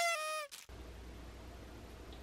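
An edited-in sound effect: one short tone with a slightly falling pitch, lasting about half a second and laid over a cut where spoken words were removed. Faint room tone follows.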